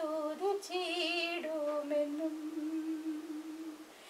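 A woman's voice singing a Malayalam Christian hymn without accompaniment: a short melodic phrase, then one long held note that fades just before the end.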